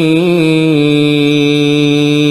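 A man chanting an Arabic ruqyah supplication in melodic Quran-recitation style. The voice wavers through a short ornament, then holds one long, steady note.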